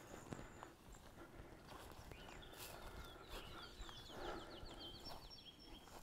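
Faint outdoor ambience with soft footsteps in grass, and a distant bird's rapid trill of short high notes for a couple of seconds in the middle.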